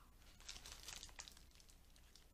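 Faint crinkling of a paper sandwich wrapper held around a grilled chicken sandwich as it is bitten into, a short cluster of crackles about half a second to a second and a half in.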